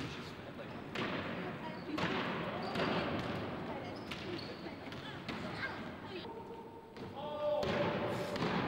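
A basketball being dribbled on a wooden gym floor, its bounces coming at uneven intervals, roughly one a second.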